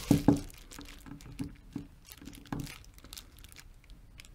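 Faint, irregular small clicks and ticks as a Torx bit on a ratchet handle turns the adjustment screw of an Aisin AW55-50SN transmission shift solenoid, here the black-connector one, through a full turn.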